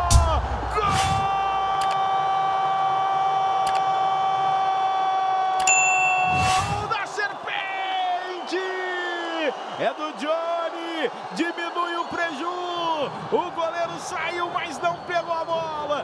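Sports commentator's goal cry: one long held shout lasting about five seconds, then a string of short sung-out calls that swoop up and down in pitch, over arena crowd noise.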